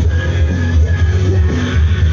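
Live band playing loud amplified music through a PA system, with a heavy bass line, recorded from within the crowd.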